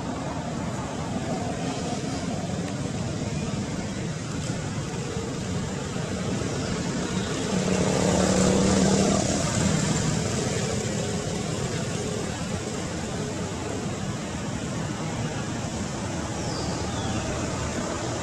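Steady outdoor background noise, with a motor vehicle passing that swells and fades about eight to ten seconds in.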